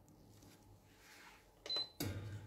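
Faint room tone, then near the end a short click with a brief, high-pitched electronic beep.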